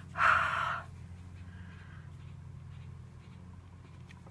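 A single short huff of breath onto a marker-inked rubber stamp to remoisten the ink before stamping, near the start, over a steady low electrical hum.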